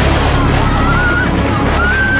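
Tornado winds blasting the microphone: a loud, steady low rumble with a noisy roar over it. A thin wavering high tone runs above the roar.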